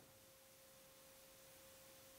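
Near silence, with only a faint steady tone held at one pitch throughout.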